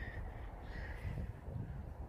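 A crow cawing faintly in the background, about a second in, over a low rumble on the microphone.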